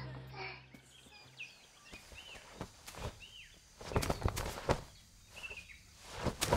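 Outdoor ambience with a bird chirping now and then, short arched calls a second or so apart, and a few soft rustling steps on grass, the most distinct cluster about four seconds in. The tail of soft background music fades out in the first second.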